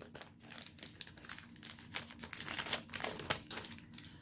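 Thin plastic packaging crinkling as hands handle it: a quiet, irregular run of crackles.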